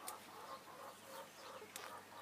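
Chickens clucking faintly in short repeated calls, with a couple of brief sharp clicks.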